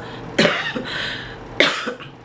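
A woman coughing twice, about a second apart.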